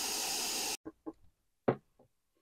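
White noise from an FG-200 DDS function generator played through an audio amplifier, a steady hiss that cuts off suddenly under a second in. A few small clicks follow.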